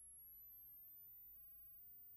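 Bitwig Test Tone device playing a very high, thin sine tone that dips slightly at the start and then slowly climbs again as its frequency is swept near the top of hearing. It is being used to test hearing range and where headphones stop reproducing high frequencies.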